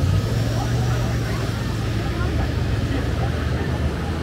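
Busy city street ambience: a steady low rumble of road traffic under the chatter of a dense crowd of pedestrians.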